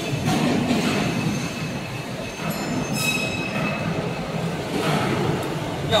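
Steady rumbling workshop machinery noise. A thin, high metallic squeal rises over it from about a second in and ends about three and a half seconds in.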